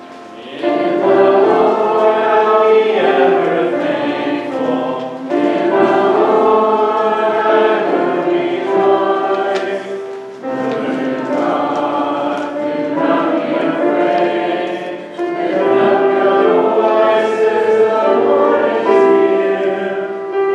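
Congregation singing a hymn with piano accompaniment, in four phrases of about five seconds each with short breaks between them.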